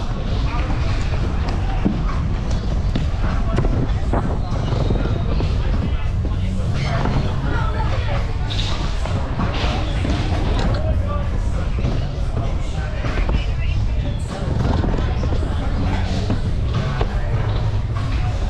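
Scooter wheels rolling over wooden pump-track ramps, with a constant low rumble of wind and rolling noise on a rider-mounted action camera. Background music and indistinct voices run throughout.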